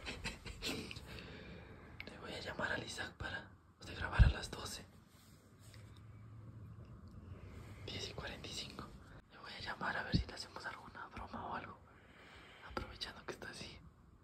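Hushed whispering from a person close to the microphone, in short stretches with pauses between. A sharp thump about four seconds in, and a smaller one about ten seconds in.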